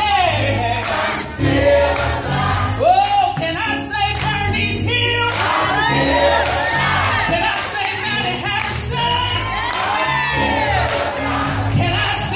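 Gospel choir singing over a steady low instrumental accompaniment, with voices sweeping up and down in pitch in long runs in the second half.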